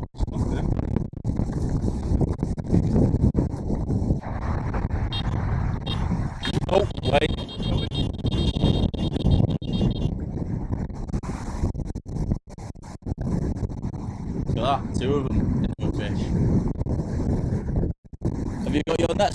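Wind buffeting the microphone in a steady low rumble, with brief indistinct voices about seven seconds in and again around fifteen seconds.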